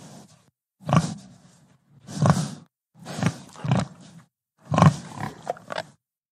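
Pig grunting: a run of loud, rough grunts about one a second, with a few shorter ones near the end.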